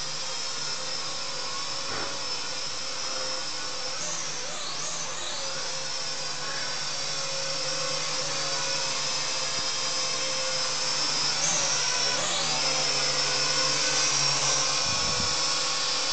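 SNAPTAIN S5C toy quadcopter's small electric motors and propellers whining steadily in flight. The pitch swoops twice, about four seconds in and again near twelve seconds, as the motors change speed.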